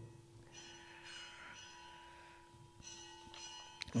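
Faint ringing, like a distant bell, heard twice over a low, steady hum, with a short click near the end.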